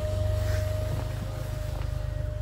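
Steady low hum inside a car cabin with the ignition on, with a thin steady whine over it.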